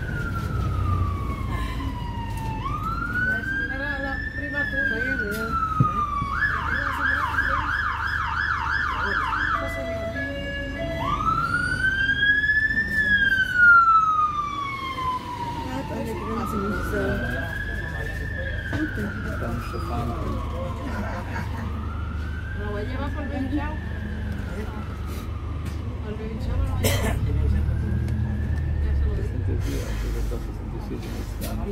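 An emergency vehicle's siren in wail mode, each slow rise and fall in pitch taking about five seconds. About six seconds in it switches to a rapid yelp for about three seconds, then returns to the wail. Underneath runs the low rumble of the bus's engine.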